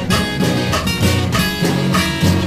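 Instrumental background music with guitar and a steady beat, with no singing.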